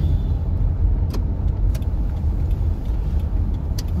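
Car cabin noise: a steady low rumble of the running car heard from inside, with a few faint sharp clicks.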